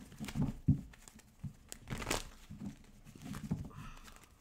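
A tarot deck shuffled by hand: cards rustling and slapping against each other in uneven spurts, with a few soft knocks.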